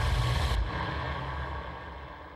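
A deep, low rumble from a TV channel's ident sound design. It drops off about half a second in and fades away.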